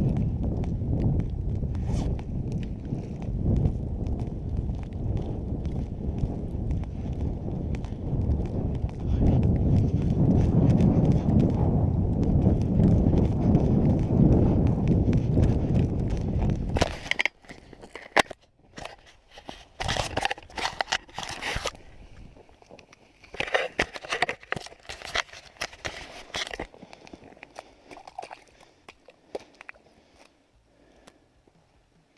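Boots walking fast through snow on lake ice: a dense run of crunching footsteps that stops about seventeen seconds in. Quieter, scattered crunching and scraping of snow follows in short bursts as a tip-up is handled at the hole.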